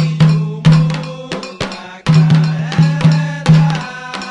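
Candomblé ritual music for Oxum: atabaque hand drums struck in a driving rhythm of about three strokes a second, with a metal agogô bell ringing on the beat.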